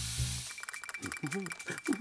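Cartoon soundtrack: a hiss fades out in the first half second over low bass notes. Then a rapid light clicking patter with a thin steady high tone runs on, joined in the second half by a wavering, moaning voice.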